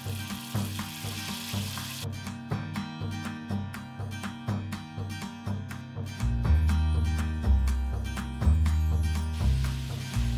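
Background music with a steady beat and a stepping bass line, over chunks of beef rump roast sizzling in hot bacon grease in a cast iron skillet. The sizzle is plain for the first two seconds and then cuts off abruptly, leaving the music. The bass grows louder about six seconds in.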